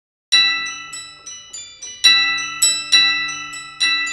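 Spectrasonics Keyscape 'Toy Piano - Glock Octave' patch, a sampled toy piano doubled with glockenspiel, played on a keyboard. Bright, chiming notes start about a third of a second in. Each struck note or chord rings and fades, with the strongest chords about two, three and nearly four seconds in and lighter notes between them.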